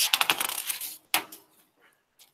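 A quick rattling run of small sharp clicks lasting about a second, then a single click just after.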